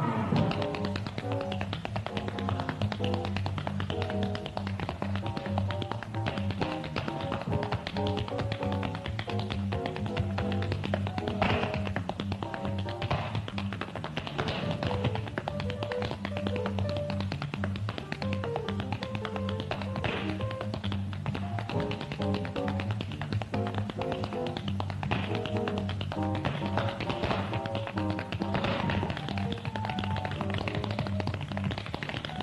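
Tap shoes clicking out fast, dense rhythms on the floor over instrumental accompaniment.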